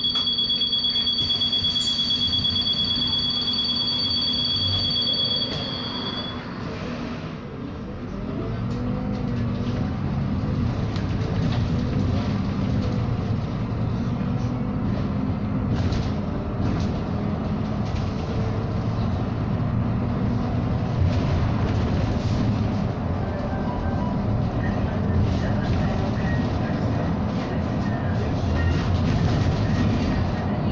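Interior of a SOR NB18 diesel city bus: a steady high two-note beep sounds for about six seconds over the idling engine while the bus stands. About eight seconds in, the engine note rises as the bus pulls away, then keeps rising and falling as it drives, with road and body noise.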